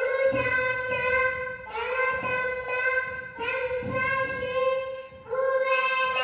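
A young boy chanting a shloka in a sing-song voice, holding each steady note, in three phrases broken by short pauses.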